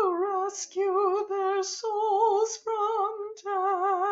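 A woman singing a verse of the responsorial psalm solo and unaccompanied, with a wide, even vibrato, in phrases split by short breaks.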